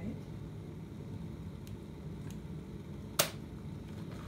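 Redmond glass electric kettle boiling a water-and-vinegar descaling solution with a steady low rumble, then its automatic switch clicks off sharply a little after three seconds in as the water reaches the boil.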